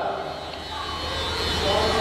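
A steady mechanical drone, like an engine heard from a distance, over a low hum, growing a little louder about a second in.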